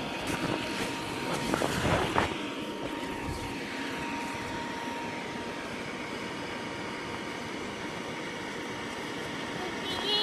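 Steady rushing hum of an inflatable bounce house's air blower, with a child's laugh and a few bumps on the vinyl in the first two seconds.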